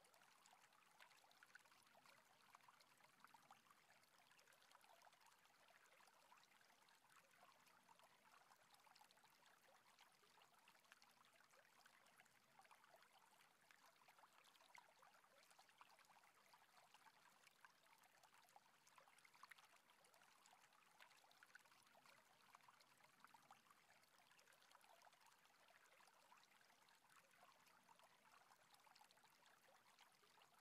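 Faint, steady sound of a shallow stream babbling over rocks.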